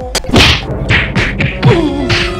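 A quick series of about five loud whacks from blows in a staged slapstick fight, over background music.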